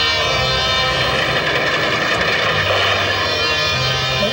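Background music with sustained low tones, overlaid by a steady rushing, wind-like sound effect.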